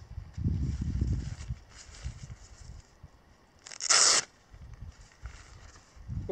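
Hook-and-loop (Velcro) strip on a nylon roll-top backpack ripped open once, a short loud tearing about four seconds in, after some low rumbling fabric handling as the top is unrolled.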